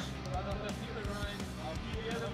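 Broadcast background music with sustained low tones, with a skateboard faintly rolling on the plywood course underneath.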